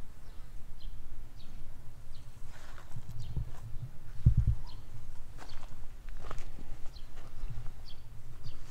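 Footsteps on a garden path and the rustle of plants brushed in passing, over a steady low rumble on the microphone, with the loudest thump about halfway through.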